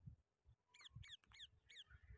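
Near silence, with a faint run of four or five quick, high, downward-sliding bird chirps about a second in.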